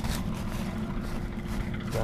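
Wind rumbling on the microphone, with a faint steady hum underneath.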